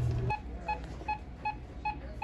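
Bedside patient monitor's pulse beep: short high beeps of the same pitch, about two and a half a second, each sounding a heartbeat at a rate of about 150 a minute. The beeps start shortly after the opening.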